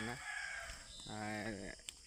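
A rooster crowing in the distance, faint and thin, with a man's voice heard briefly about a second in.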